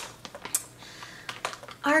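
Plastic snack pouch being pulled open by hand: a quick run of sharp clicks and crinkles.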